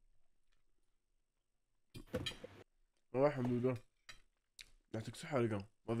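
Near silence for about two seconds, then a man's voice speaking in several short phrases.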